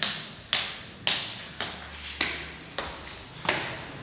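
Footsteps climbing hard stone stairs, about two steps a second, each step a sharp knock that echoes in a bare stairwell.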